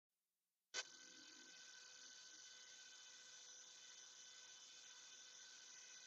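Near silence: after a soft click about a second in, a faint steady whine from a Dremel 4000 rotary tool running its flex shaft at full speed, run this way to work excess grease out of an overheating flex-shaft handpiece.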